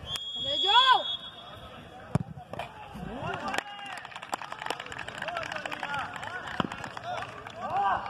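Referee's whistle blowing one long blast for a football penalty kick, with a shout over it, then a single sharp thud of the ball being struck about two seconds in. Spectators shout and talk after the kick.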